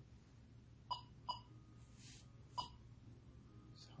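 Three short electronic beeps: two in quick succession, then a third about a second later, with a soft breathy hiss between them. A low steady hum runs underneath.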